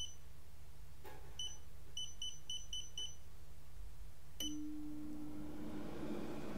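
Digital air fryer's touch-panel beeping as the temperature and time are keyed in: single beeps, then a quick run of five at about four a second. With one more beep a little past the middle, the fryer's fan starts running with a steady low hum.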